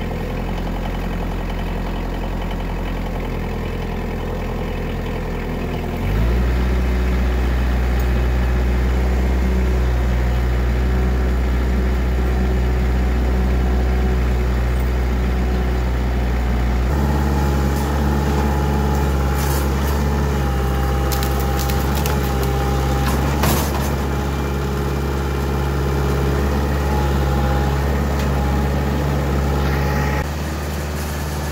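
Kioti compact tractor's diesel engine running while it drives with a front-loader bucket full of logs. It revs up about six seconds in and changes pitch again a little past halfway. A few clicks and rattles follow in the second half.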